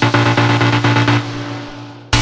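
Electronic dance music: a heavy, sustained synth bass under a regular beat, with the treble filtered away and the level falling over the last second, leading into a brief break.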